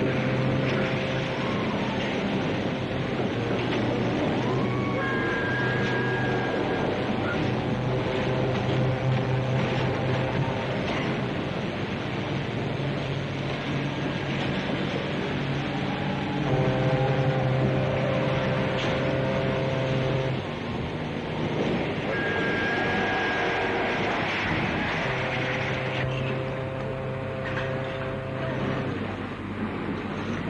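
Several ships' whistles and sirens sound long overlapping blasts at different pitches, starting and stopping every few seconds, over the noise of a cheering crowd: a salute to a liner being launched.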